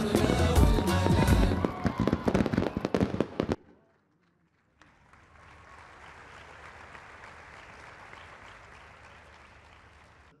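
Show music with a heavy beat that cuts off abruptly about three and a half seconds in. After a second's gap, an audience applauds steadily and quietly, fading toward the end.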